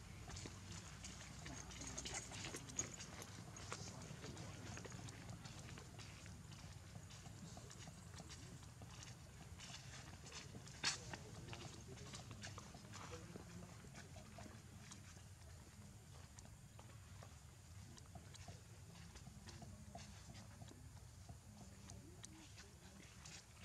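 Faint outdoor background: a steady low rumble with scattered light ticks, and one sharp click about halfway through.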